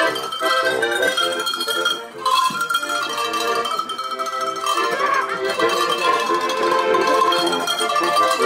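A melody rung on a set of tuned cowbells of different sizes, each lifted and shaken by hand, with button-accordion accompaniment. There is a brief break in the ringing about two seconds in.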